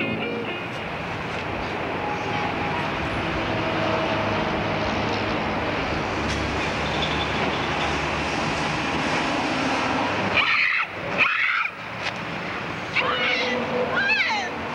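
Steady outdoor hiss of street ambience on a home video camera's microphone. About ten and eleven seconds in come two short, loud, high wavering cries.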